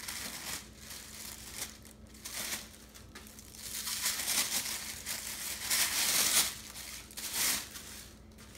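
Clear plastic wrapping crinkling and rustling in irregular bursts as a pot lid is pulled out of it, loudest from about halfway in.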